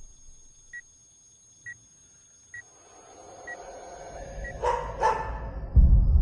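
Film-trailer sound design: a run of short, high electronic beeps about once a second, fading, over a thin steady high tone. A swelling rumble builds under it, with two short sharp sounds and then a deep, loud hit near the end.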